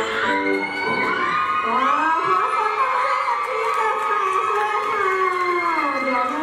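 A K-pop dance track cuts off about a second in, and an audience cheers and screams, many high voices overlapping.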